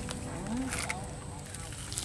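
Quiet handling of a nylon gill net as fish are picked out of it by hand: a few faint clicks and rustles over low outdoor background.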